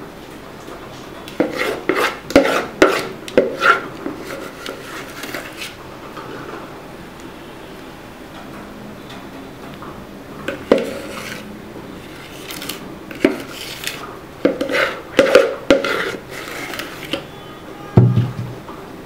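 Metal spoon scraping and knocking thick cake batter out of a plastic mixing bowl into a metal cake pan: clusters of clinks and scrapes about two seconds in, again around eleven and thirteen seconds, and a busier run near the end.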